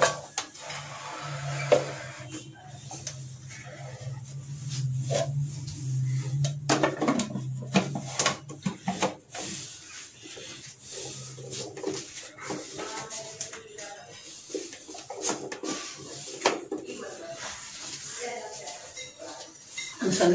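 Plastic food-processor bowl, lid and pusher being handled and set in place: a string of knocks and clatters, the sharpest right at the start and about two seconds in, over a low steady hum that stops about halfway through. Faint voices in the background.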